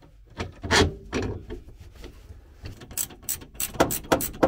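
A single clunk of metal parts being handled about a second in, then short metallic clicks several times a second near the end: a ratchet spanner tightening the nut on the steel gearbox strap that clamps the new urethane bush.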